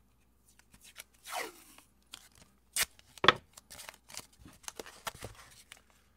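Blue painter's tape being pulled off the roll with a short ripping sound about a second in, then a sharp snap a little past three seconds, the loudest sound, followed by a run of small crinkles and taps as the strip is handled and pressed against a cardboard mailer.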